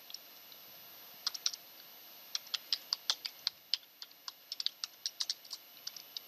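Computer keyboard being typed on: a few keystrokes about a second in, then a quick run of keystrokes, several a second, from about two seconds on.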